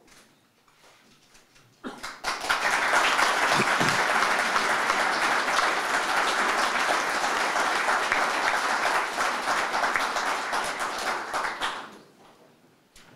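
Audience applauding: the clapping starts suddenly about two seconds in, holds steady, and fades near the end.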